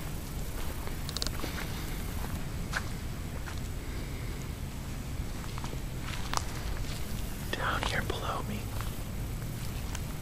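A person whispering, loudest about three-quarters of the way in, over a steady low rumble, with a few faint clicks.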